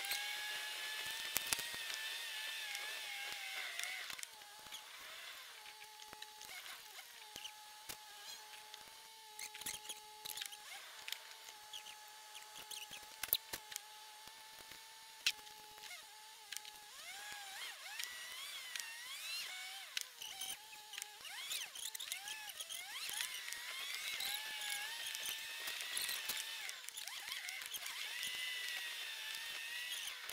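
In-car dashcam sound of a drive played back at sixteen times speed: the engine and road noise are pushed up into high whines and chirps that glide up and down, over a steady hum-like tone, with scattered sharp clicks.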